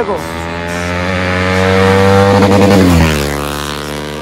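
A motorcycle engine passing close by. It rises steadily in pitch and loudness as it comes on, then its pitch drops sharply about three seconds in as it goes past.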